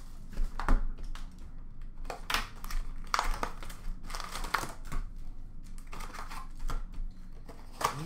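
Hockey card box and its foil packs being handled: packaging rustling and crinkling, with scattered light taps and clicks as packs are taken out and set down, over a faint steady hum.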